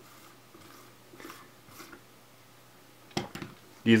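Quiet handling noise of gloved hands working a lens and a rubber lens-opening stopper while unscrewing the front name ring, with faint soft rubbing. A single sharp knock comes about three seconds in.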